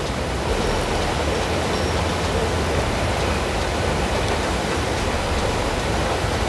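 Steady rushing outdoor noise with an uneven low rumble underneath, holding at one level throughout.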